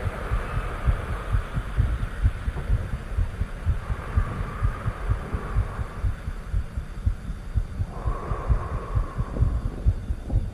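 Deep, pulsing low rumble from the soundtrack of a lunar module ascent stage lifting off the Moon, with several irregular low pulses a second. Over it a faint hiss swells twice.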